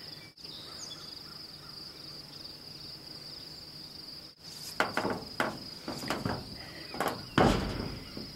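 Steady high chirring of insects. In the second half comes a run of irregular knocks and rustles, the loudest and longest near the end.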